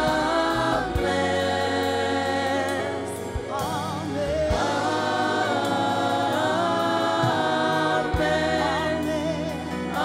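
Gospel worship team singing a slow "Amen, amen, amen": a lead voice over a choir of backing singers, holding long notes with vibrato, with band accompaniment underneath.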